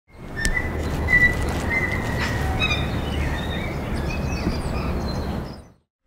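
Birds chirping and whistling over a steady background hiss and low rumble, fading in at the start and fading out near the end.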